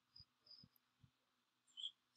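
Near silence: room tone with a few faint, short high chirps and soft low taps.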